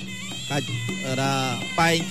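Traditional Cambodian ringside fight music: a sralai reed pipe plays a wailing melody with sliding notes over a steady held drone, with skor yaul drums underneath.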